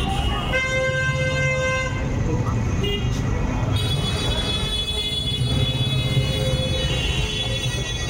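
Busy street din of crowd and traffic with a vehicle horn honking once, for just over a second, about half a second in. Another long, steady horn-like tone comes in about four seconds in and holds.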